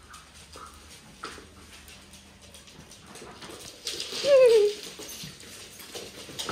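A dog gives one short, loud whine that falls in pitch, about four seconds in, over faint light clicks and scuffles from dogs moving on the floor.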